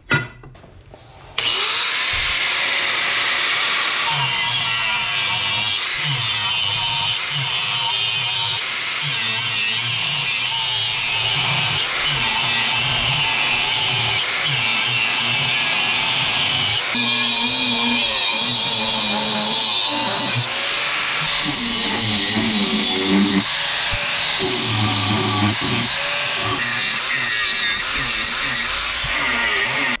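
Angle grinder with a cut-off disc cutting through steel knife stock: a loud, steady grinding hiss that starts abruptly about a second and a half in, with background music underneath.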